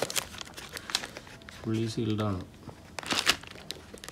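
Plastic courier mailer crinkling and a cardboard parcel box rustling as they are handled, loudest about three seconds in. A short spoken bit falls near the middle.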